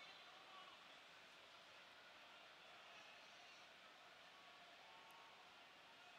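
Near silence: only a faint, steady stadium background during a stoppage in play.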